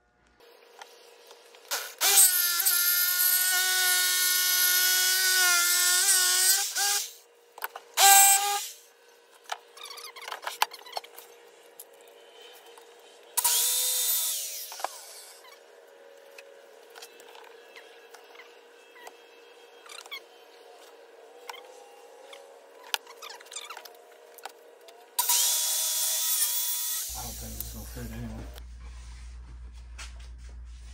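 A power saw cutting MDF sheet in four runs, the longest about five seconds near the start, its motor whining at a steady pitch. Knocks and clicks from handling the board fall between the cuts.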